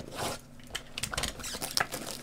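Plastic shrink wrap being cut and torn off a sealed trading card box: a short swish near the start, then a run of small crackles and scrapes.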